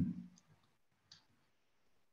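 A brief spoken 'mm' trailing off, then near silence broken by two faint clicks, about a third of a second and a second in.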